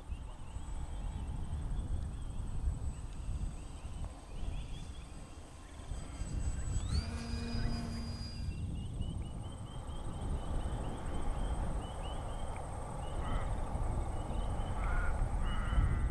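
Wind buffeting the microphone as a low, uneven rumble, with birds chirping repeatedly in the background. About seven seconds in, a short tone rises and then holds for about a second and a half before cutting off.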